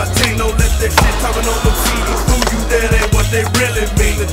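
Skateboard on concrete: wheels rolling and the board knocking on a ledge, with two sharp cracks near the start and about a second in. Hip-hop music with a steady beat plays throughout.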